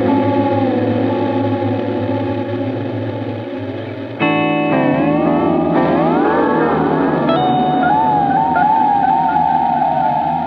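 Electric guitar played through an Audio Disruption Devices L.A.G. lo-fi dual delay pedal with its modulation on. A chord rings and slowly fades, a new chord is struck about four seconds in, and its delay repeats then wobble up and down in pitch.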